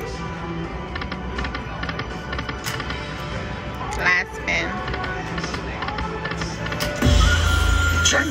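Aristocrat Dragon Link slot machine (Golden Century game) playing its music and jingles through repeated reel spins, over casino-floor voices. A louder low-pitched sound comes in about seven seconds in.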